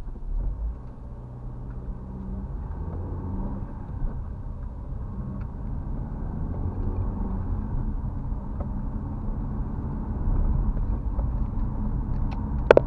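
A car's engine and road noise, heard from inside the cabin, as the car pulls away and accelerates, growing gradually louder.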